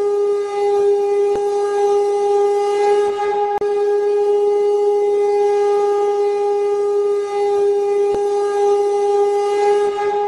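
One loud, steady drone note with a stack of overtones, held unbroken over a faint hiss, with a brief break about three and a half seconds in.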